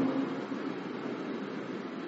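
A man's amplified voice trails off right at the start, then a steady, even hiss of background room noise with no distinct events.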